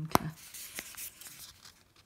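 Fingers picking at the tab of a small cardboard cosmetics box: a sharp click just after the start, then a few faint ticks and scratches of handling.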